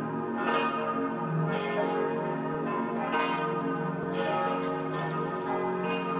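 Church bells ringing: several bells of different pitch strike in an uneven sequence about once a second, their tones ringing on and overlapping.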